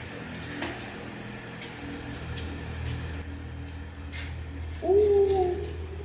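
Elevator arriving after being called: a steady low hum of machinery with a few light clicks, then, about five seconds in, a louder short pitched sound as the doors open.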